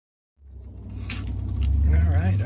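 Silence, then about half a second in outdoor sound cuts in: a low rumble that grows steadily louder, with scattered clinks and rattles of broken glass shards and debris being moved by hand.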